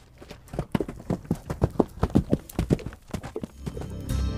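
Horse's hooves clip-clopping on a paved road, a quick run of about four or five hoofbeats a second that swells in at the start and eases off near the end.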